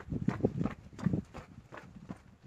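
Jogging footsteps on pavement: a quick, uneven series of footfalls.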